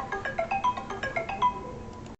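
A quick electronic tune of short, high notes, several a second, stepping up and down like a phone ringtone.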